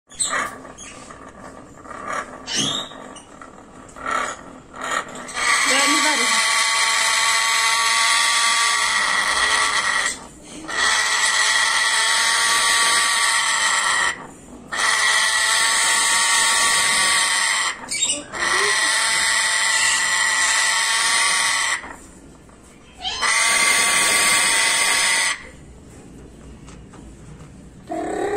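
African grey parrot giving long, harsh, angry calls: five in a row, each about three to four seconds long with short breaks between, after a few short calls at the start.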